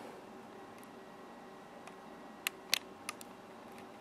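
Quiet room tone with a faint steady hum, broken past the middle by three or four short, sharp clicks close together.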